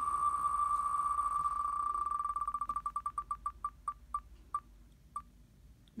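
Sound effect of an online spinning prize wheel ticking. The clicks come so fast at first that they blend into a steady tone. They then slow into separate ticks, spaced further and further apart, with the last one about five seconds in as the wheel comes to rest.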